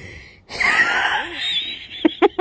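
A child's long, wheezing breath of held-in laughter, starting about half a second in and lasting over a second, with a faint rising squeak in it.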